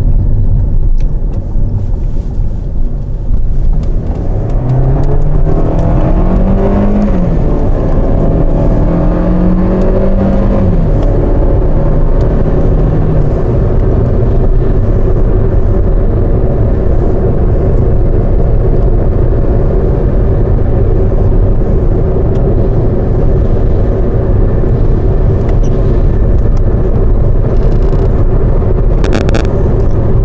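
Car engine heard from inside the cabin, accelerating through the gears: its pitch climbs three times, dropping back at each upshift. It then settles into a steady drone with constant tyre and road noise at highway speed.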